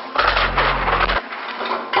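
Thermite-type charge burning inside a steel box column: a loud crackling hiss as flame and sparks spray out, with a deep rumble through the first second.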